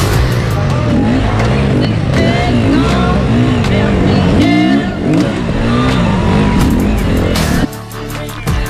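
KTM enduro motorcycle engine revving up and down over and over, about twice a second, as the bike is throttled through a log obstacle section, with music underneath; the engine sound cuts off suddenly near the end.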